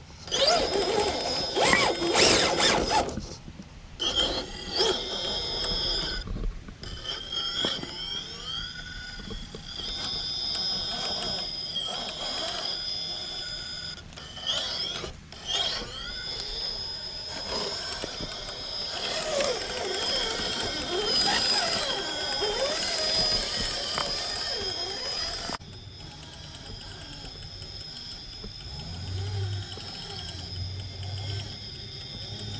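RC rock crawler's 2000kv brushless motor and gear transmission whining as it crawls over boulders, the whine rising and falling with the throttle, with tyres and chassis scraping on rock, loudest in the first few seconds. The sound gets quieter near the end as the truck is farther off.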